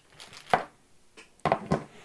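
Handling noise on a wooden tabletop as a crimping tool is moved and a plastic bag of RJ45 connectors is touched: one sharp click about half a second in, then a short cluster of knocks and rustles near the end.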